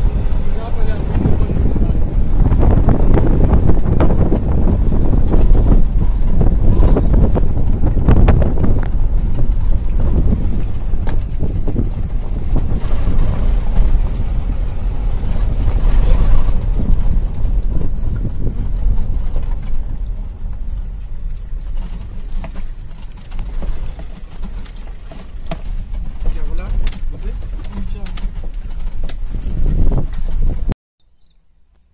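Loud wind rushing over the microphone with the low rumble of a moving car, with scattered knocks and rattles from the ride. It eases somewhat in the last third.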